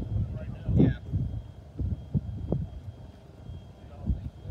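Gusty wind rumbling on the microphone in an open field, with a few short indistinct sounds, the loudest about a second in.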